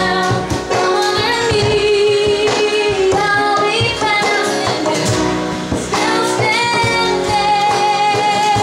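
A woman singing live with piano and guitar accompaniment, holding long notes in two places.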